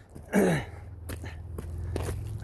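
A man coughs once, a short harsh burst about half a second in, then a low steady hum with a few faint footsteps on gravel.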